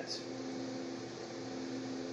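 Steady low mechanical hum with an even fan-like hiss, unchanging throughout.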